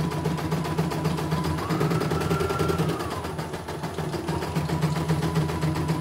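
CNY E900 embroidery machine stitching: a fast, even run of needle strokes over a steady motor hum, with a whine that rises briefly in pitch about two seconds in and settles back. The machine is running smoothly through thin fabric.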